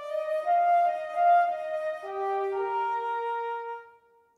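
Solo flute playing a slow, legato melody in the middle of the treble register, a single line of held notes that moves down and then back up, then dies away near the end.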